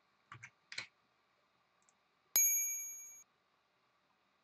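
Two faint clicks, then a single bright ding that rings out with a clear bell-like tone and fades over about a second.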